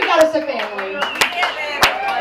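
A few scattered hand claps from a small audience, single claps about every half second, over people talking.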